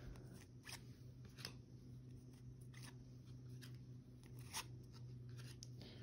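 Near silence broken by faint, scattered clicks and rustles of trading cards being flipped through by hand.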